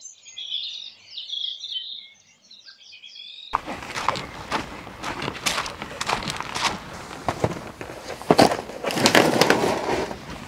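Small birds chirping and singing for the first three seconds or so, then footsteps crunching on gravel with rustling and a run of short knocks, loudest near the end.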